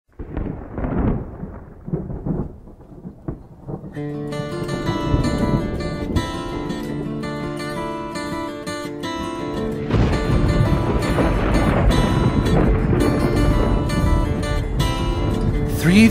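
Recorded thunder and rain open a country ballad with about four seconds of irregular rumbling. The slow instrumental intro then comes in over it and fills out about ten seconds in.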